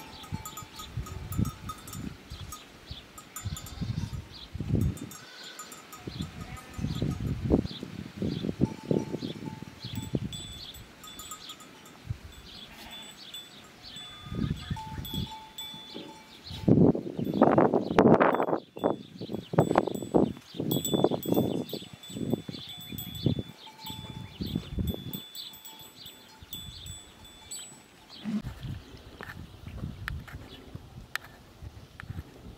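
Bells on a herd of goats and sheep clinking and clanking irregularly as the animals move about, louder for a few seconds a little past the middle.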